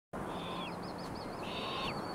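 Hawk calls: two high cries of about half a second each, the second about a second after the first, each falling off at the end, with a fainter warbling chirp between them.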